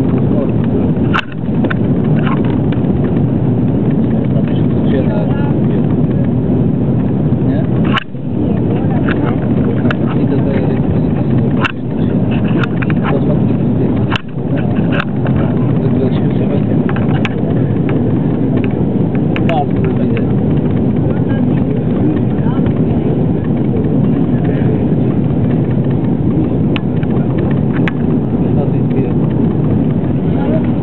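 Steady loud cabin noise of a jet airliner in flight, the rush of engines and airflow heard from a window seat. It is broken by a few brief, sudden dropouts.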